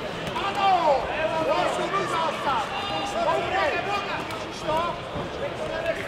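Many voices talking and calling out at once, overlapping into a steady din of chatter in a sports hall.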